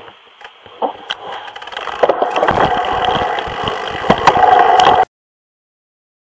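Mountain bike rolling on a dirt trail: tyre and drivetrain rattle with many sharp clicks and knocks under rumbling wind buffeting on the helmet camera. It builds about a second in, is loud from about two seconds, and cuts off abruptly about five seconds in.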